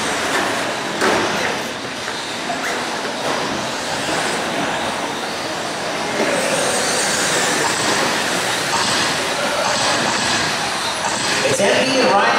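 Radio-controlled short-course trucks running on an indoor dirt track: a steady noisy haze of their motors and tyres on dirt, a little louder from about six seconds in.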